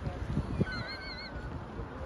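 Outdoor background noise with wind rumbling on the microphone, and a faint, wavering high-pitched call lasting under a second near the middle.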